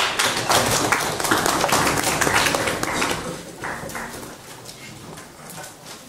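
Small audience applauding at the end of a speech, dense for about three seconds and then thinning out and fading.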